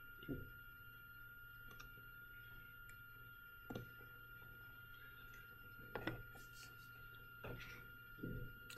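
Near silence: faint room tone with a steady thin whine and low hum, broken by a few soft clicks.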